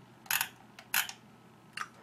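Computer mouse scroll wheel turned in three short flicks about two-thirds of a second apart, each a quick run of clicks as the web page scrolls down.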